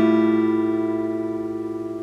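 A steel-string acoustic guitar in drop D tuning, one strummed chord left ringing and fading slowly.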